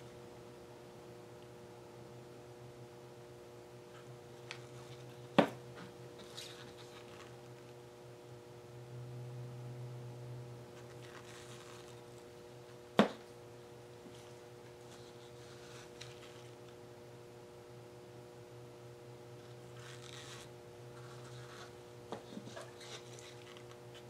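Faint handling sounds of small plastic paint cups and wooden stir sticks over a steady low hum. Two sharp knocks, about five seconds in and about thirteen seconds in, are the loudest sounds, with light rustling and a few small taps near the end.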